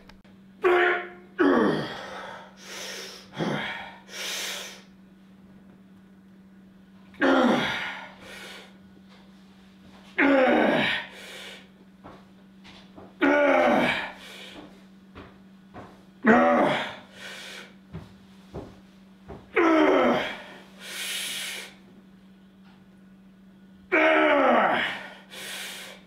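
A man's strained grunts and forceful exhalations, one with each rep of a slow barbell bench press, coming about every three seconds, each dropping in pitch.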